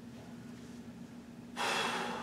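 A man's sharp breath out through the nose, about one and a half seconds in, lasting just under a second, over a faint steady hum.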